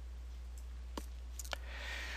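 Low steady electrical hum in a pause, with a few short sharp clicks about a second in and again around a second and a half, then a soft breath-like hiss near the end.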